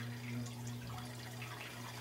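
Low steady hum of the small electric motor turning a rotating jig-drying rack.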